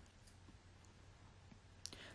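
Near silence: faint room tone in a pause in the narration, with a small click shortly before the end.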